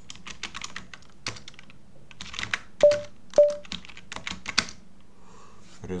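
Typing on a computer keyboard: a quick run of key clicks. Near the middle come two much louder sharp knocks about half a second apart, each with a brief ringing tone.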